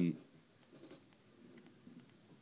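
A man's drawn-out 'um' trailing off at the very start, then faint, low scratching and rustling in a small room, with a few soft clicks.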